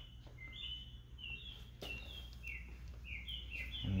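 A bird chirping repeatedly, short slightly falling high notes about three a second at shifting pitch, over a faint low steady hum.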